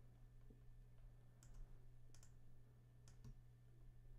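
A few faint computer mouse clicks, scattered and irregular, over a steady low electrical hum.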